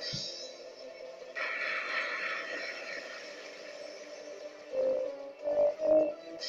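Legend of Triton video slot machine playing its free-spin music and reel sounds, with a few louder chime notes near the end as a small win lands.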